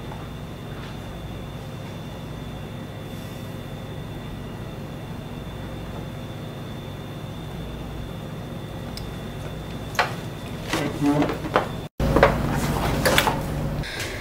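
A steady low hum, then a cluster of sharp clicks and knocks in the last four seconds, broken by a brief cut-out about two seconds before the end.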